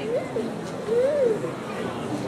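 Murmur of voices with a child's high voice gliding up and down in pitch, loudest about a second in.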